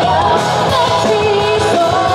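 A live rock band playing with a woman singing lead into a microphone: a held, wavering vocal melody over electric guitar, bass, keyboard and drums, heard through the stage PA.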